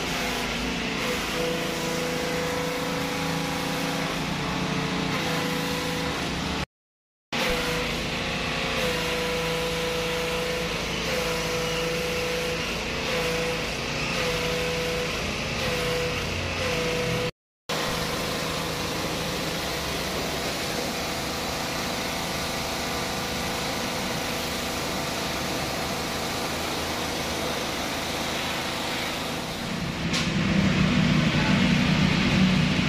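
Electric pressure washer running and spraying snow foam and water onto a scooter: a steady motor-and-pump hum whose pitch dips and recovers as the load changes, under a continuous spray hiss. The sound cuts out briefly twice.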